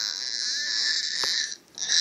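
A baby girl's high, raspy squealing vocalisation: one long squeal, then a short second one near the end.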